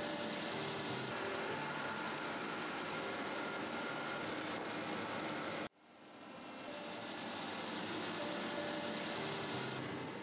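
Steady whir of a polishing wheel working the bowl of a stainless steel ladle. About six seconds in the sound cuts off suddenly, and a similar steady machine hum fades back in.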